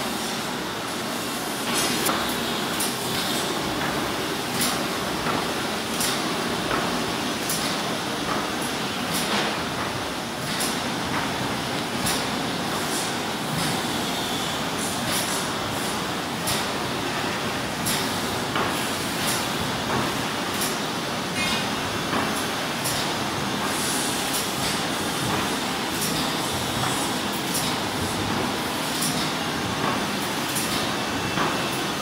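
YB-1450BG semi-automatic flute laminating machine running: a steady mechanical clatter with irregular sharp clicks, roughly one a second.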